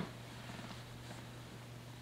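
A steady low hum over faint room noise.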